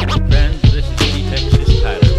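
G-funk hip-hop track: a deep stepping synth bass line, with a drum beat of sharp hits coming in suddenly at the start and running on over it.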